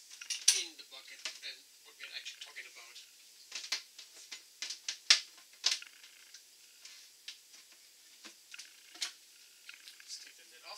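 Snap-on plastic lid being pried off a 5-gallon plastic fermenting bucket with a lid tool: a run of sharp, irregular plastic clicks and snaps as the lid's locking rim comes free.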